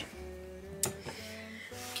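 Quiet background music with a few held, plucked guitar notes, and a single short click a little before the one-second mark.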